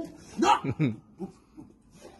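Large dog making a few short vocal sounds that fall in pitch, about half a second in, while it mouths a man's face in rough play; it goes quieter after.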